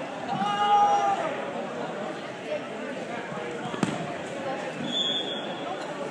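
Wrestlers grappling on a gym mat in an echoing hall: a long shouted call near the start, a single sharp thud of a body hitting the mat a little under four seconds in, and a brief high squeak about five seconds in.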